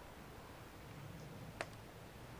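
Quiet background with a single sharp click about three-quarters of the way through.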